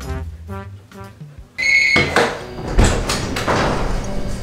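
Light comic jazz background music with brass notes, which fades out about one and a half seconds in. It gives way abruptly to louder room noise with knocks and thuds, like a door and bags being handled.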